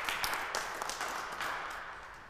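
Audience applause, many hands clapping, thinning out and fading away.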